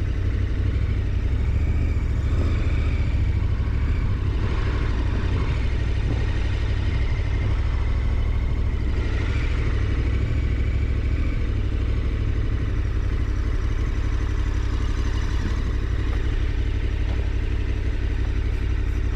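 KTM 1290 Super Adventure R's V-twin engine running steadily at idle and low speed, a constant low engine note with no change in revs.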